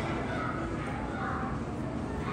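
Indistinct background voices of children and adults in an indoor playground, a steady hubbub of chatter and play with no single voice standing out.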